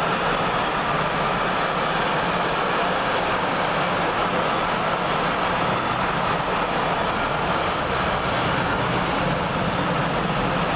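Container wagons of a long freight train rolling past: a steady, even noise of wheels on the rails with no breaks.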